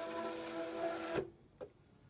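Cricut Expression cutting machine's feed rollers and motor ejecting the cutting mat, a steady whine that cuts off suddenly a little over a second in. A faint click follows.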